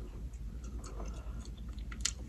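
A person chewing a mouthful of burrito, with faint small wet clicks of the mouth.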